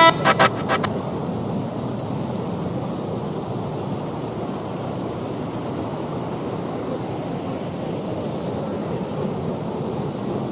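Rushing mountain stream pouring over boulders: a steady, even roar of water. The tail of a song cuts off in the first second.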